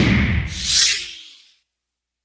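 A whooshing transition sound effect: a deep rumble under a rushing hiss that starts suddenly, swells twice, and fades out about a second and a half in.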